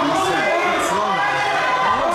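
Crowd of spectators and ringside voices talking and shouting over one another, many voices at once, without a break.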